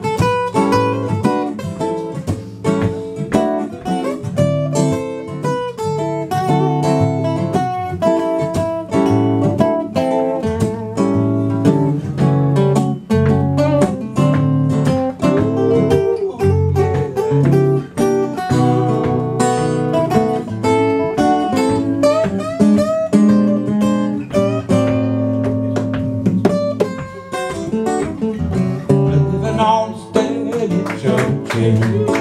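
Two acoustic guitars playing a blues-style instrumental break, strummed chords with picked notes over them.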